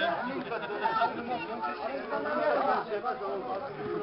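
Chatter of a small outdoor crowd: several men's voices talking over one another, with no drum or zurna playing.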